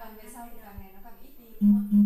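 Woman's voice over background guitar music. Near the end a loud, steady low tone sounds in three short pulses.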